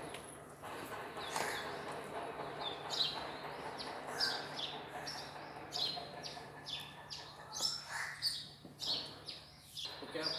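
Small birds chirping in many quick, short, high calls, over a steady low machinery hum.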